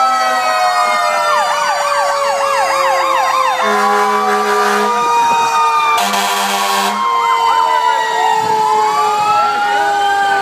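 Fire truck sirens: a long wailing tone slowly falling in pitch throughout, joined about a second in by a fast yelping siren for about two seconds. Two long horn blasts sound around the middle, and near the end a siren winds up again.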